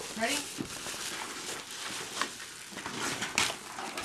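Rustling and crinkling of gift packaging as a present is unwrapped and opened, with a few sharp clicks and crackles.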